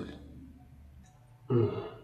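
A man's brief, low-pitched vocal sound, short and wordless, about a second and a half in, after a quiet pause.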